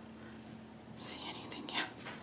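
A person whispering under their breath: two short, hushed, breathy bursts, about a second in and near the end.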